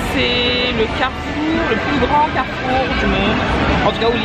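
People talking over the steady crowd noise of a busy street. A brief steady pitched tone sounds just after the start.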